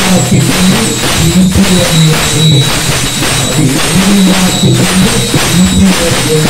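Devotional bhajan: a group of men's voices singing, with percussion and a constant metallic jingle keeping a steady beat of about two strokes a second.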